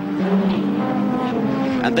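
Group A touring-car engines at high revs, holding a steady note, heard on the race broadcast's trackside sound.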